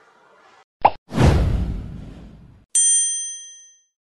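Edited outro sound effects: a short pop just under a second in, then a loud whoosh with a deep low end that fades over about a second and a half, then a bright chime ding that rings out for about a second.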